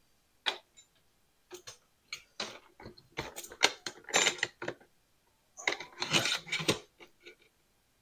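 Handling noise of a folding portable solar panel and its cables: irregular clicks, knocks and small rattles, coming in a few short clusters.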